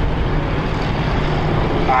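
Several stock-car engines running at low speed as the field circulates together under a caution, a steady low engine note.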